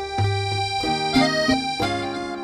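Piano accordion playing a melody in sustained reedy chords, the notes changing several times a second over low held notes.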